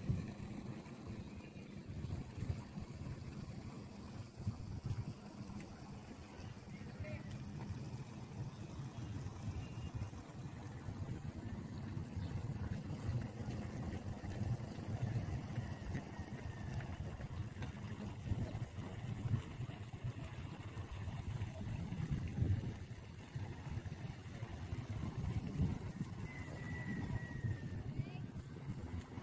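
Outdoor seaside ambience: a low, uneven rumble, with faint voices of people in the background.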